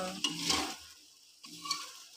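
A metal spatula stirring and scraping a sauté of tomato, onion and egg in a metal frying pan, in a few separate strokes, the loudest about half a second in, over a light sizzle.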